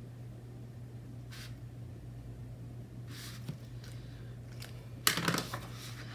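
Faint strokes of a pen on paper, then a short, louder rustle of paper about five seconds in as the notebook is handled and laid open. A steady low hum runs underneath.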